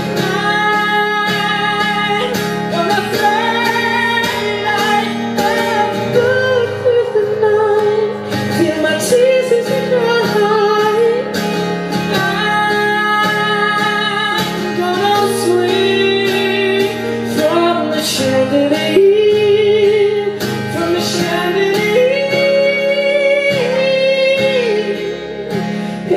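A solo male singer holding long, wavering notes in rising and falling phrases, with no clear words, over a strummed acoustic guitar.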